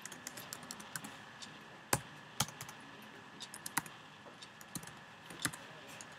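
Typing on a computer keyboard: irregular keystroke clicks at an uneven pace, with a few sharper, louder strokes among them.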